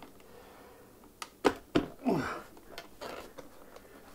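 Hard plastic knocking and clicking as a 40V battery in a homemade adapter is pushed down into a dethatcher's battery compartment: two or three sharp clicks about a second and a half in, then quieter rubbing knocks as it seats.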